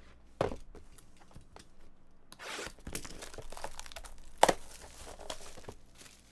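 Plastic shrink wrap being torn and crinkled off a trading-card box, with a sharp knock about half a second in and a louder one about four and a half seconds in.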